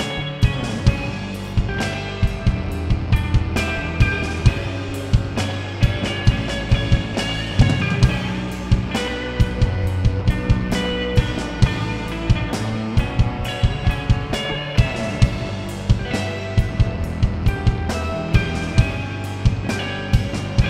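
Live rock band playing an instrumental passage: electric guitar, electric bass and drum kit, with the drum strikes standing out at a steady beat and no singing.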